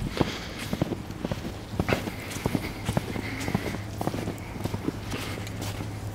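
Footsteps of boots tramping through deep fresh snow, several uneven steps a second. A low steady hum comes in about halfway through.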